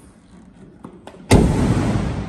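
The rear hatch of a box van's sheet-metal cargo box is slammed shut: a few faint clicks, then a single loud bang about a second and a half in, followed by a lingering low rumble.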